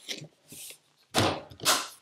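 Lid of an ICECO JP50 portable fridge-freezer being shut, with two sharp knocks about half a second apart, the second past the middle of the clip.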